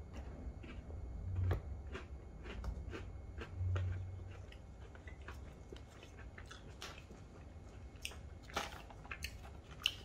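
Quiet chewing of a mouthful of Cadbury milk chocolate with vanilla filling and Oreo biscuit, with many small irregular crunching clicks from the biscuit pieces.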